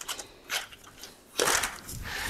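Handling noise at a recumbent trike: a faint click, then about one and a half seconds in a brief sharp clatter.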